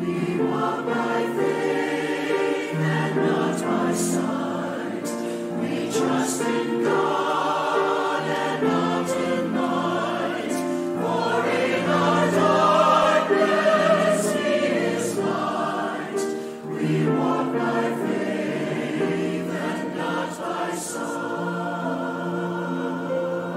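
Mixed choir of men and women singing a sacred choral piece with piano accompaniment, swelling to its loudest a little past the middle.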